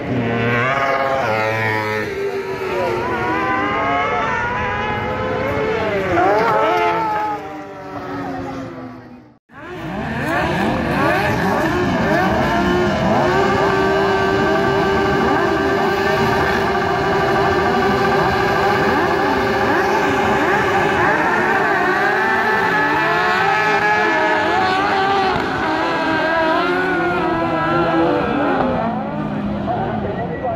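Kart cross buggies' motorcycle engines racing, revving up and down as the karts go by. After a brief break about nine seconds in, a pack of several engines drones together at steady high revs, then pitches start rising and falling again near the end.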